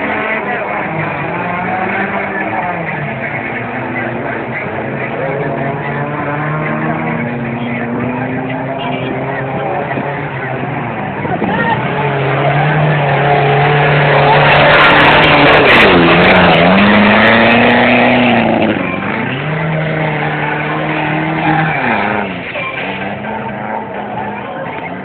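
Suzuki Samurai 4x4 engine revving under load as it churns through a mud pit, the pitch rising and falling with the throttle. It is loudest for a few seconds past the middle as the jeep pushes through close by, with crowd voices underneath.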